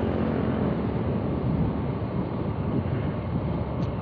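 A motorcycle engine running at steady road speed, with wind rumbling on the microphone.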